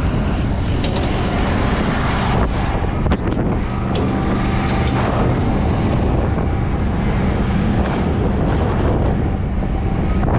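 Brush truck engine running steadily as the truck drives slowly over rough pasture, heard from the truck bed with wind buffeting the microphone. A few sharp clicks and rattles from equipment on the bed in the first half.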